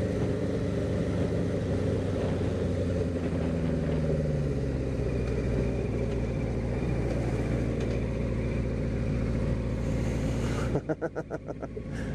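1988 Honda CBR600F1 Hurricane's inline-four engine running steadily at road speed, heard from a helmet-mounted camera with wind noise over it. The engine note rises briefly about three to four seconds in.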